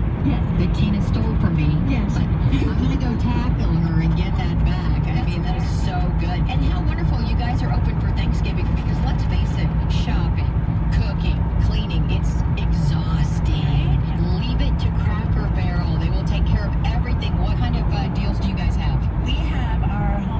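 Steady low rumble of road and engine noise inside a car's cabin at highway speed, with indistinct talk over it.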